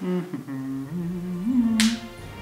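A person humming a short tune, several held notes stepping up and down. A brief hiss near the end.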